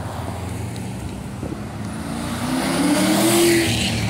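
A car driving past and accelerating, its engine note rising in pitch and getting louder over the second half.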